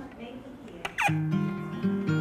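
Background acoustic guitar music comes in about a second in, opening with a short falling sliding note and then a few held plucked notes.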